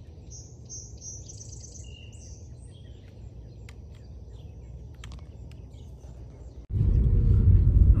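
Birds chirping: a quick run of high chirps in the first two seconds and a short single note just after, over a low steady hum. Near the end it cuts abruptly to the much louder low rumble of a car's cabin on the move.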